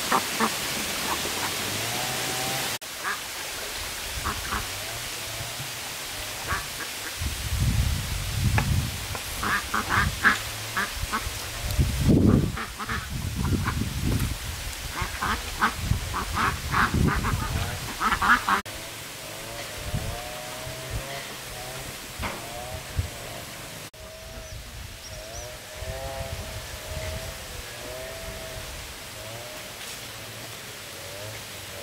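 Ducks quacking in repeated short calls, mixed through the middle with knocks and bumps from handling around the pen.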